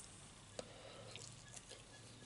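Near silence with a few faint, soft mouth clicks from eating ham, the sharpest at the very start and a smaller one about half a second in.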